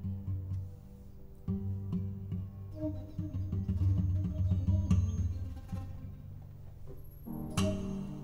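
Improvised music on low plucked strings: deep notes sound singly at first, grow busier in the middle, then thin out, with a sharp struck note near the end.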